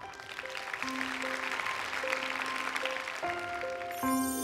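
Studio applause over soft background music of slow held notes; the applause swells during the first second and stays steady.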